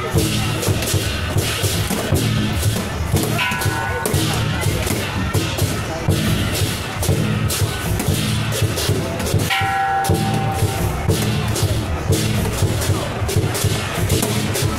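Chinese lion-dance drum beaten in a steady, driving rhythm with crashing cymbals, played for a lion dance.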